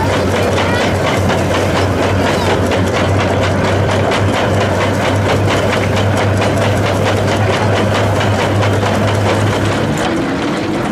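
An early-1900s wooden threshing machine running, driven by an Ardennes draft horse walking a treadmill. It makes a loud, steady mechanical hum with a fast, even rattle.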